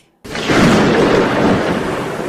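A thunder sound effect: a loud, even rumble that begins suddenly about a quarter of a second in and carries on steadily.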